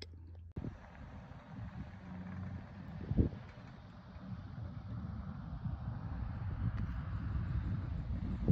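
Wind buffeting the phone's microphone in open country, an uneven low rumble with a light hiss, and a single thump about three seconds in.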